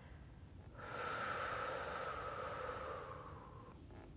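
A woman's slow, deep breath out, airy and audible, starting about a second in and lasting about three seconds, sinking slightly in pitch as it fades.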